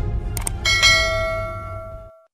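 Quick mouse-click sound effects, then a bell-like notification ding that rings out and fades: the audio of a subscribe-and-bell end-card animation. It plays over low background music that cuts off just after the ding.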